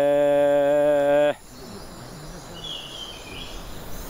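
A low voice holds one long, steady sung 'oh', the mantra chanted to calm the wild bees, and stops abruptly about a second in. Then comes a faint night-forest background with a brief insect chirp.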